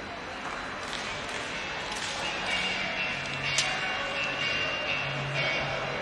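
Indoor swimming pool ambience: a steady wash of noise with a few sharp knocks, and held music notes coming in about two to three seconds in and carrying on.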